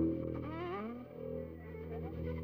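Bowed strings playing free-form, with violin, cello and double basses. The double basses hold a low drone while sliding upward glissandi rise through the first second, then the music thins and gets quieter.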